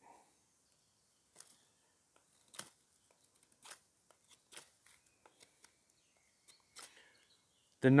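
A knife blade shaving wood and stripping bark off a stick: short, quiet, irregular scraping strokes with pauses between them.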